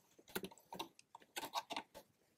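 Small screwdriver tip clicking against plastic roof trim as it is worked into the gap between two trim pieces: a string of short, irregular light ticks.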